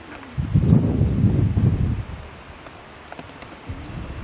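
Wind buffeting the camcorder microphone: a gusty rumble about half a second in that lasts over a second, then eases to a lower rustle.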